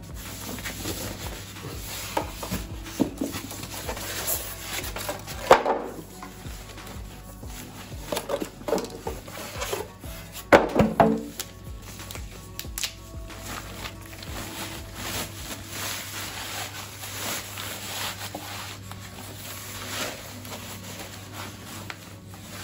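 Packaging handled while unboxing a subwoofer: polystyrene foam end caps pulled off and plastic wrap rustling as it is peeled back, with two sharper, louder noises about five and ten seconds in. Faint steady background music runs underneath.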